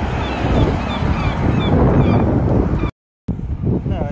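Wind buffeting the phone's microphone, with a car driving by on the road. Short, high bird calls repeat about three times a second over the wind. The sound cuts out completely for a moment about three seconds in.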